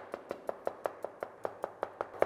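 Chef's knife chopping rapidly on a cutting board, an even run of about six or seven strokes a second: mincing shallots finely.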